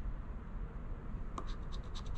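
A coin scraping the scratch-off coating from a lottery ticket, with a quick run of short scrapes in the second half.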